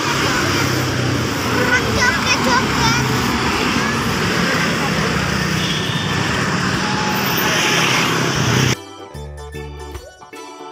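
Road traffic going by, with a truck's engine running as it passes and voices in the background. The traffic cuts off suddenly near the end and keyboard music begins.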